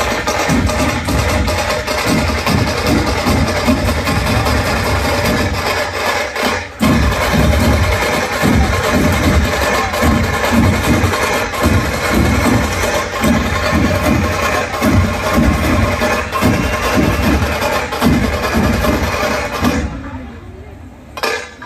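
A dhol-tasha troupe beating large barrel drums (dhol) with sticks in a loud, driving, evenly repeating rhythm. There is a brief break about seven seconds in, and the drumming stops suddenly at the end.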